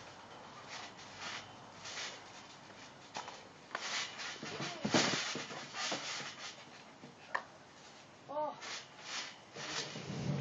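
Someone bouncing on a trampoline: the mat and springs give soft thuds roughly once a second, with a louder landing about five seconds in.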